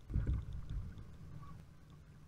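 Low rumble of water and wind against a fishing kayak, picked up by the boat-mounted camera's microphone, with a brief louder surge just after the start.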